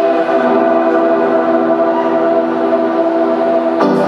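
Sustained synthesizer chord, several steady notes held together, with a slight change in the voicing about a third of a second in. Just before the end, sharp electronic drum hits come in over it as the beat starts.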